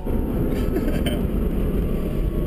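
Road and wind noise inside the cabin of a Tesla Roadster electric sports car under acceleration, a loud steady low rush, with the passengers laughing.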